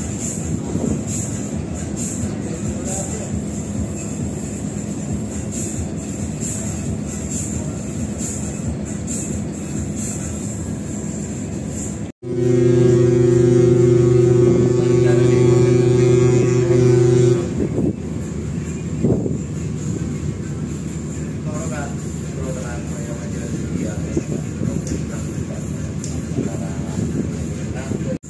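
A large ship's horn sounds one long, deep blast of about five seconds, a steady note rich in overtones, about halfway through, over the steady rumble of a passenger ship's open deck while it approaches port to dock.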